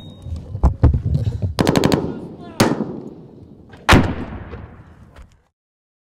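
Gunfire in a firefight: scattered sharp shots, a rapid burst of about six shots about one and a half seconds in, then two heavy reports with long echoing tails, the last near four seconds. The sound cuts off abruptly near the end.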